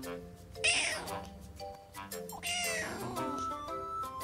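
Tabby kitten meowing twice: a short, loud call about half a second in and a longer one around two and a half seconds in, both falling in pitch. Soft background music plays underneath.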